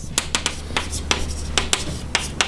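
Chalk on a blackboard: a run of short, sharp taps and scratches, several a second, as words are written.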